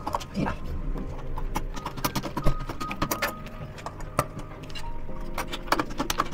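A run of sharp metallic clicks and clinks from hand tools worked against a steel door hinge, over background music.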